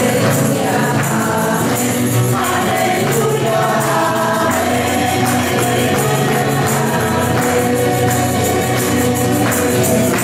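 Christian worship song: a group of voices singing together over music with a steady beat.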